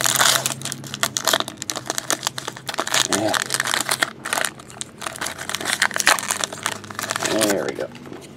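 Wrapper of a Fleer Showcase hockey card pack crinkling and tearing as it is opened by hand, with a rapid, uneven run of crackles throughout.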